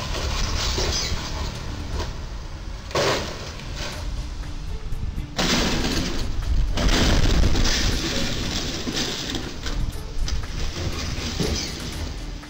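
Steady noisy rumble with a sudden crash about three seconds in, as a tall travel trailer strikes a low railway bridge, followed by a louder stretch of noise a couple of seconds later.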